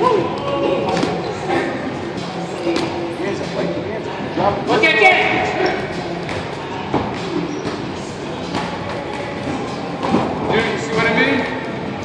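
Boxing gym during sparring: indistinct voices echoing in a large hall, with scattered sharp thuds and knocks.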